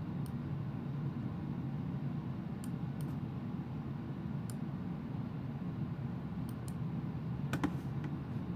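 Scattered sharp clicks of a computer keyboard and mouse, about eight in all, a pair of them close together near the end, over a steady low hum of room noise.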